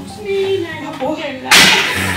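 A sudden loud rush of noise about one and a half seconds in, lasting about half a second, over faint voices.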